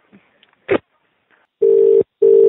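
British telephone ringing tone heard down the line: a steady low tone in a double burst, "brr-brr", starting near the end, the signal that the called phone is ringing. Before it the line is near silent apart from one brief click-like sound about a second in.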